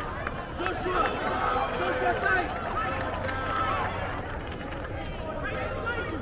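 Many overlapping voices of players and spectators calling out at once on a soccer field, none standing out, over a steady low hum.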